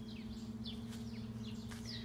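Birds chirping: short, high notes that fall in pitch, repeated about every half second, over a steady low hum.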